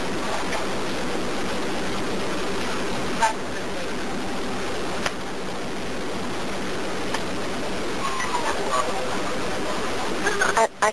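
Steady hiss on the line of a recorded 911 emergency phone call, broken by two short clicks, with faint voices in the background near the end.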